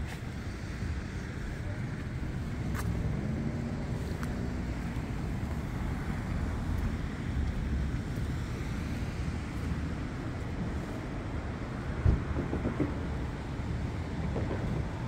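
Steady low rumble of distant road traffic, with a few faint clicks and one louder thump near the end.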